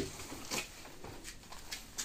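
Faint rustling and a few light knocks as a coiled rope lasso is taken down and handled.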